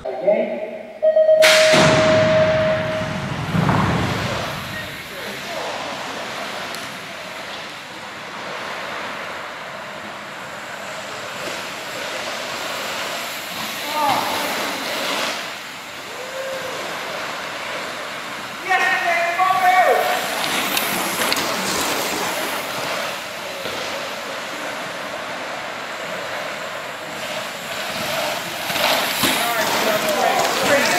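BMX start gate: a steady electronic start tone and, just after it begins, the gate dropping with a loud bang. Then bikes roll and land over the dirt track in a steady rush of tyre noise.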